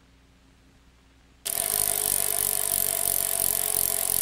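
Near silence, then about one and a half seconds in a loud, steady hiss-like noise starts abruptly, with a few faint steady tones in it.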